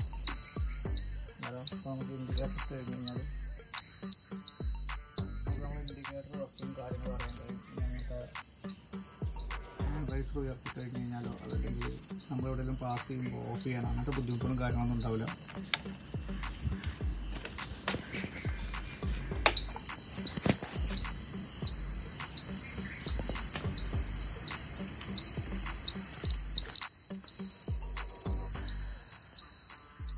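Aftermarket universal piezo buzzer wired to the Revolt RV400's turn indicator, sounding a steady high-pitched tone while the indicator is on. It stops a little past halfway, then starts again about two seconds later. Background music plays underneath.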